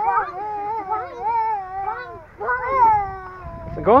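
A young child's high-pitched, wavering vocalizing, drawn out in two long stretches rather than broken into words.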